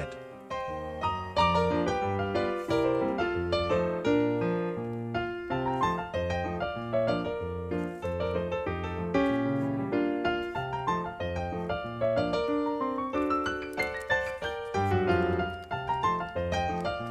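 Background piano music: a steady stream of notes over a bass line.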